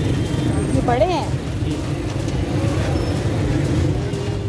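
Busy street ambience: a steady rumble of traffic under the chatter of a dense crowd, with a brief raised voice about a second in.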